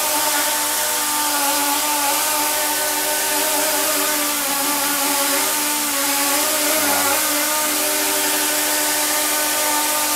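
Propellers on the end of a cantilevered camera rod spinning steadily, lifting it: a whir of several steady tones over an airy hiss, wavering slightly in pitch.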